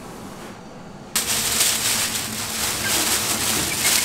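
Rice-milling machine running with a loud, steady, hiss-like grinding noise that starts suddenly about a second in.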